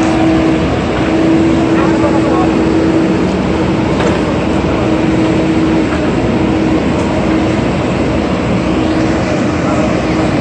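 Diesel engine of a JCB 3DX backhoe loader running steadily while its backhoe arm is swung and lowered, giving a continuous engine hum. Crowd voices chatter over it.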